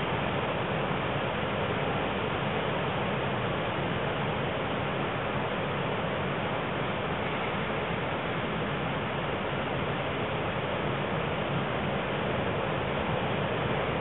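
Ocean surf heard as a steady, even rushing noise, with no single wave standing out.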